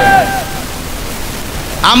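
A man's amplified voice through a public-address system draws out the end of a sing-song preaching phrase, then stops about half a second in. A steady hiss of outdoor PA and crowd noise fills the pause until his voice starts again near the end.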